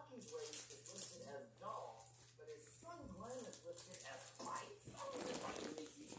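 Faint, indistinct voices talking quietly in the background, with no clear words.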